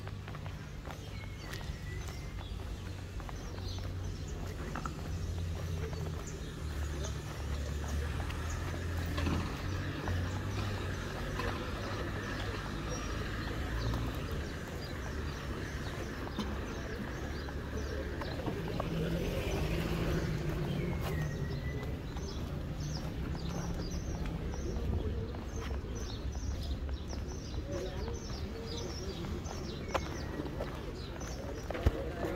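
Street ambience: a steady low rumble of traffic, swelling a little as a car passes about two-thirds of the way through, with scattered footstep-like clicks and a bird chirping a couple of times.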